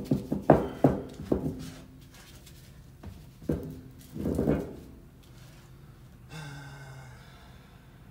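Several sharp metal knocks as heavy steel shop equipment is set down and shifted against the axle in the first couple of seconds, followed by a man's short breaths and grunts of effort.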